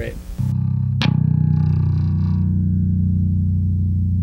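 Electric bass guitar through an amplifier: a low note struck just after the start and left ringing steadily, with a second sharp pick attack about a second in.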